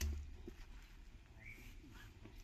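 Quiet outdoor ambience with a brief low thump at the start, then one faint, short, rising bird chirp about one and a half seconds in.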